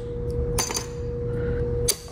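Small metal busbar spacers being set down on a PCB busbar: two light metallic clicks, the first about half a second in with a brief ring, the second near the end, over a steady hum.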